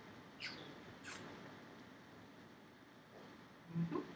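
Quiet room with two faint, short swishes about half a second and a second in as a man dances, and a brief low vocal sound from him near the end.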